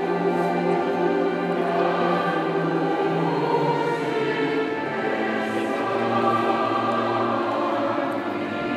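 Choir singing slowly, with long held notes that shift in pitch every few seconds.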